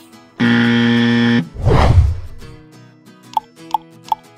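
A quiz buzzer sound effect: one flat, loud buzz lasting about a second, then a whoosh transition, over light background music.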